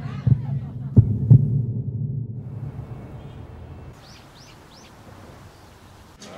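Heartbeat sound effect: two low double thumps, about a second apart, over a low hum that fades away. Then a faint outdoor hiss with three quick bird chirps near the end.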